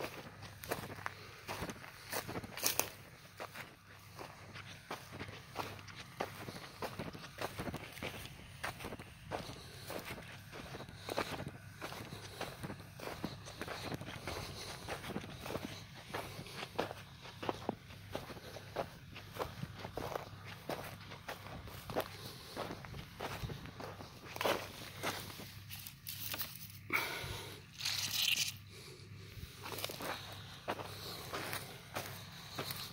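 Footsteps of a person walking over dry dirt and stubble at an unhurried pace, with a louder stretch of scuffing near the end.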